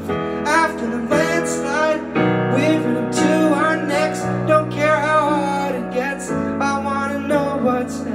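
A man singing with upright piano accompaniment in a live pop ballad: sustained piano chords change a few times, with one long chord held through the middle, under a sung melody line that slides and wavers in pitch.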